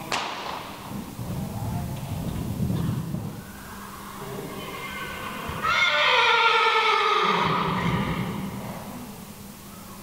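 A horse whinnying: one long neigh starting about halfway through and falling in pitch over roughly three seconds, most likely from the two-year-old colt. Before it, muffled thuds of hooves on the arena's sand.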